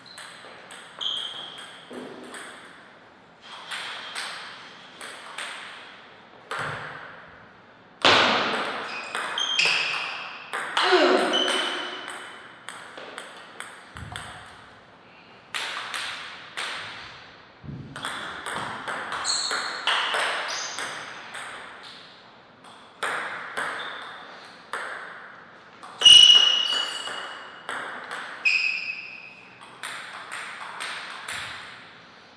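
Table tennis ball clicking back and forth off the paddles and the table in several quick rallies, each run of hits separated by a short pause between points.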